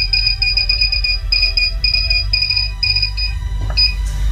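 High electronic beeping in quick runs from an MST-9000+ ECU bench simulator as its up key is pressed repeatedly to raise the simulated crank-signal frequency, the beeps stopping about three and a half seconds in with one more short beep near the end. A steady low hum runs underneath.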